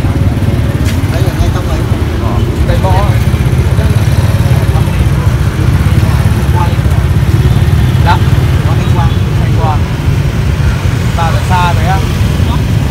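Steady low rumble of roadside motorbike and car traffic, with snatches of voices over it.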